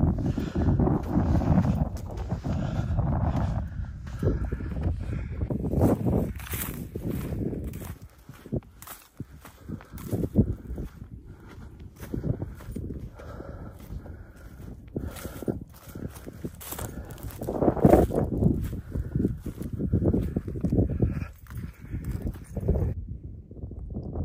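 Footsteps in loose sand, a steady run of soft impacts, with gusts of wind rumbling on the microphone, strongest at the start and again about two-thirds of the way through.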